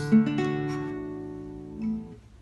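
Acoustic guitar's closing chord, plucked once a little way in with one more note added just after, then left to ring and slowly die away.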